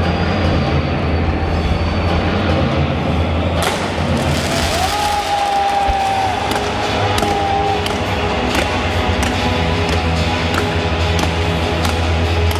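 Music playing with crowd noise; about three and a half seconds in, stadium fireworks start going off, a run of sharp cracks and bangs that keeps on to the end, with a held whistling tone for a few seconds in the middle.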